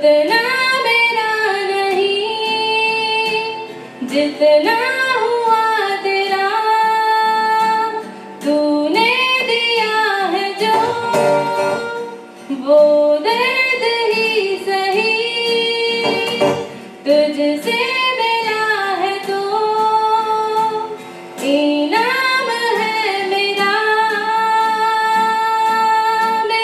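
A woman singing a Hindi song into a microphone, accompanied by a strummed acoustic guitar. The phrases last about four seconds each, with long held notes and gliding ornaments, and there are short breaths between them.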